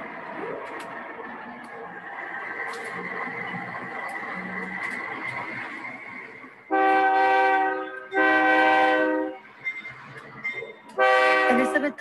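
Freight train horn sounding three long blasts, two back to back about halfway through and a third near the end, over steady train noise.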